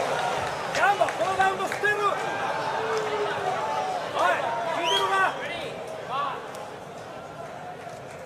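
Men's voices calling out excitedly in short, rising and falling shouts over crowd noise after a knockdown in a boxing match; the voices and crowd die down over the last few seconds.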